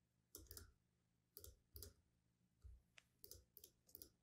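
Near silence broken by faint, scattered clicks of a computer mouse and keys, about a dozen, some in quick pairs.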